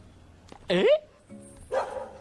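A dog barks once, short and sharp, between a man's rising "eh?" calls to it, over faint background music.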